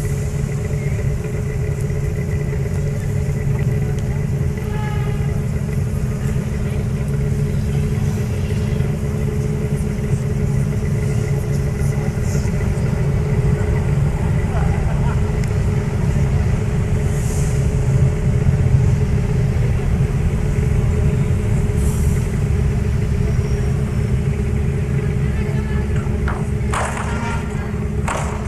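Steady low engine rumble with a constant hum, from a moored ferry's engine running at the pier.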